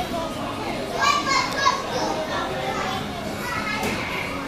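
Children playing and calling out, with high-pitched children's voices loudest about a second in.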